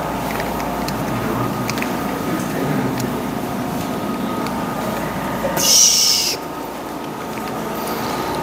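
A whiteboard eraser is rubbed across a whiteboard, with a loud, high-pitched squeak lasting under a second about six seconds in.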